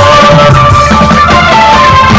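Live band playing the closing bars of a song, with long held notes over bass and drums.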